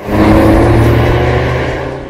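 A car engine revving, used as a sound effect: one sustained, loud run with a slight rise in pitch that fades out near the end.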